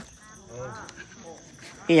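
Crickets chirring steadily in the background, a thin high continuous sound, with faint voices talking under it.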